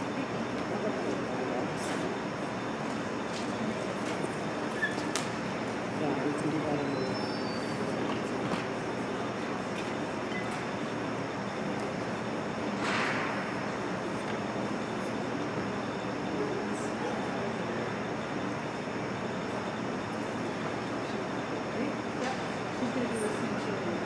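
Steady background murmur of indistinct voices and room noise in an ice arena, with a short hiss about 13 seconds in.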